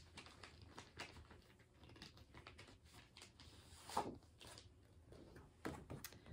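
Faint rustling of plastic bags and paper packaging being rummaged through by hand, with one brief louder noise about four seconds in.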